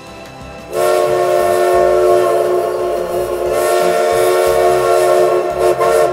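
Train horn sounding several tones together in one long, loud blast starting about a second in, then a short second toot near the end.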